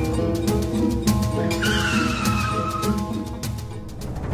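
Dramatic TV-serial background score: sustained tones under repeated sharp percussive hits. From about a second and a half in, a high whine glides slightly downward for about a second and a half.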